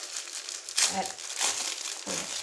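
Plastic packaging crinkling as it is handled and opened, in irregular rustles, loudest about a second in.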